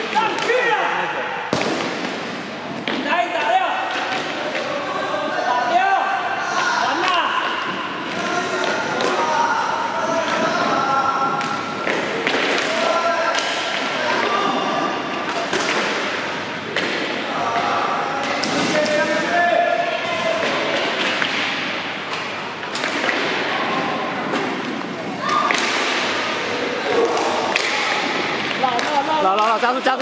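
Inline hockey play on a wooden floor: sharp knocks and thuds of sticks, puck and skates hitting the floor and boards at irregular intervals, under voices calling out across the hall.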